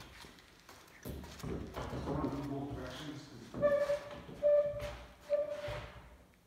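A long aluminum sheet being bent upward in a wooden bending brake, the metal flexing and rubbing with a few short, steady creaks in the second half.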